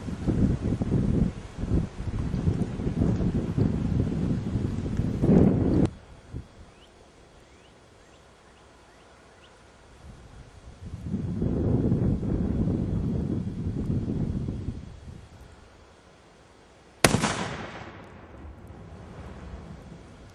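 A three-quarter-pound binary explosive charge detonates under a foam-filled blast-mitigation enclosure about seventeen seconds in: one sharp bang with a short fading tail. Before it come two long stretches of low, gusting noise.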